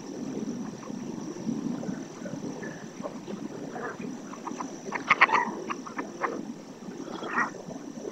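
Wetland chorus of animal calls from the lagoon: a continuous low murmur of many calls, with a burst of sharper, higher calls about five seconds in and another shorter one near the end.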